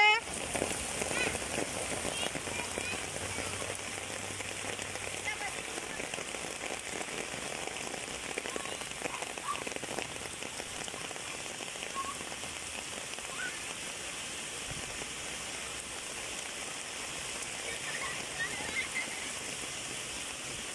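Rain falling steadily, a continuous even hiss, with faint distant voices now and then.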